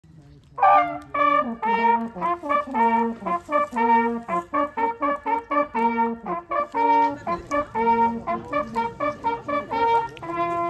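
Hunting horns, several played together, blowing a traditional hunting call: a brisk run of short brass notes starting about half a second in. It is the horn salute blown over the laid-out game at the end of a driven hunt.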